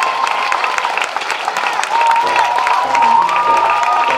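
Audience applauding and cheering as the performers bow, with music coming in about halfway through: a low bass line stepping underneath the clapping.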